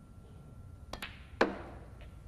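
Snooker cue tip striking the cue ball with a sharp click about a second in, then, about half a second later, a louder click with a brief ringing tail as the cue ball hits an object ball.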